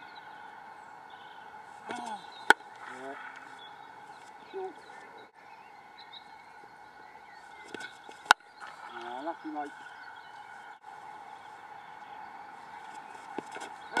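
Two sharp cracks of a cricket bat striking the ball, about six seconds apart, each a single brief impact over a quiet outdoor background.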